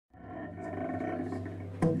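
Live free-improvised jazz from alto saxophone, double bass and drums: a steady, many-layered held tone fades in just after the start and is broken near the end by a sudden loud accent.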